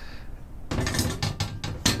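Metal wall-mount bars clattering and clicking as they are set onto the bracket on the back of a TV, a run of quick knocks starting about a second in, with the sharpest click near the end.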